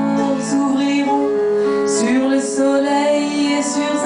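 A woman singing a slow French lullaby in held, sustained notes, accompanied by an electric keyboard.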